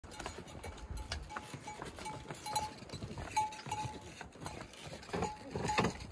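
Pack mules' neck bells ringing over and over, short single-pitched rings about ten times, with hooves knocking and scraping on stone steps.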